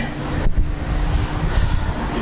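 Uneven low rumble of air buffeting the microphone, with a faint steady hum underneath.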